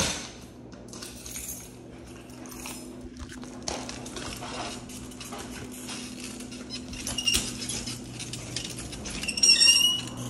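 Light metallic clinking and rattling with handling noise over a low steady hum. There is a sharp knock right at the start, and a brief high-pitched metallic squeal near the end.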